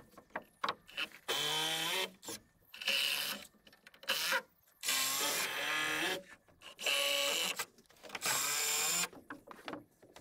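Cordless drill-driver driving screws into timber rafters, in six short runs of under a second each, with small knocks and clicks in between.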